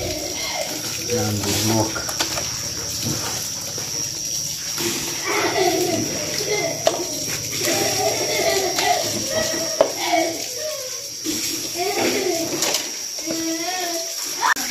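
Indistinct talking, with wet squelching and splashing as raw duck pieces are handled in a basin and in a pot of water.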